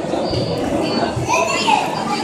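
Indoor chatter of a crowd of visitors, children's voices among them, with a high child's voice rising above the babble near the end.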